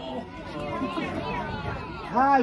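Children's voices calling out on a football pitch, several shouts overlapping at a distance with spectator chatter.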